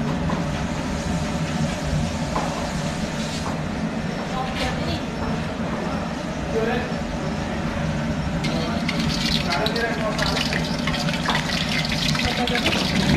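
Cheese balls deep-frying in hot oil in a wok, a steady sizzle over a low rumble. The sizzle grows louder and more crackly about eight and a half seconds in.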